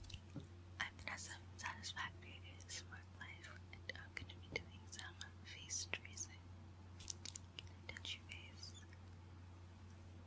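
Close-miked ASMR whispering with wet mouth clicks and crackles, over a steady low hum. The mouth sounds die away near the end.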